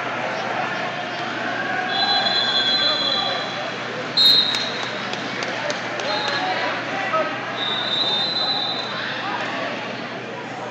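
Busy gymnasium with wrestling on several mats: a background of crowd and coaches' voices, and several high, steady whistle blasts up to about a second long. A sharp slap sounds about four seconds in.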